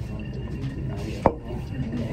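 A single sharp knock a little over a second in, as the base of a glass graduated cylinder is set down on the lab bench, over a steady low room hum.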